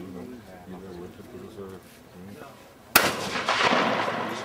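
A shotgun firing once at a trap target about three seconds in, a sharp loud crack followed by about a second of rough noise slowly dying away.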